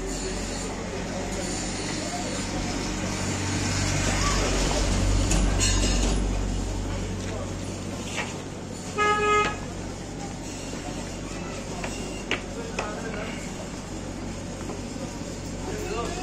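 Busy street ambience with a motor vehicle's low rumble that swells and fades over a few seconds. It is followed about nine seconds in by a quick double toot of a vehicle horn, with voices in the background.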